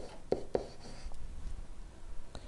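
A pen writing on a digital writing surface: a few light taps and faint scratches as the strokes go down.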